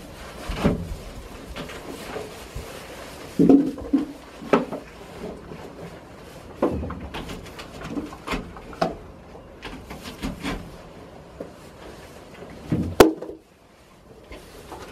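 Irregular knocks and thumps on wood with rustling straw as goats jostle around plastic buckets in a wooden shed, with one sharp knock near the end.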